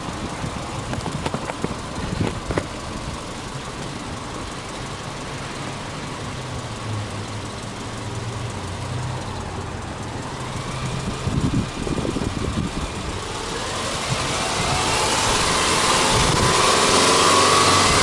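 Subaru Forester's flat-four boxer engine idling with the hood open. Over the last few seconds a steady rushing noise rises in level and then holds, louder than the idle.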